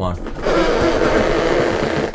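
GT Omega Pro racing office chair tilting all the way back with its recline lever released: a steady rushing, rustling noise that starts about half a second in and holds until the end.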